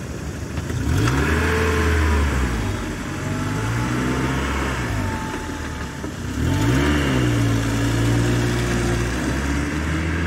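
Car engine pulling away and gathering speed: its note rises about a second in and again a little past the middle, holding steady after each rise.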